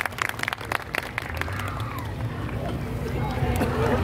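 Audience applause dying away over the first second or so, followed by crowd chatter over a low rumble.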